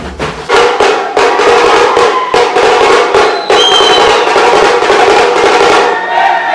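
A troupe of drummers beating large metal-shelled drums with sticks in a fast, dense, loud rhythm. A short high whistle sounds partway through.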